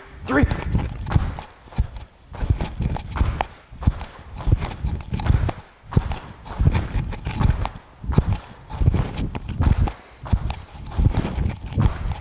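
Feet landing on a gym floor in repeated thuds, in a rhythm of two small bounces followed by a bigger tuck-jump landing, over and over.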